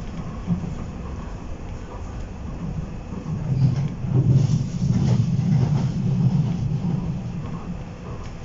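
Docklands Light Railway B07 Stock car running between stations, heard from inside the car: a steady low rumble from the wheels and running gear. It swells louder about halfway through, with a few brief rattles.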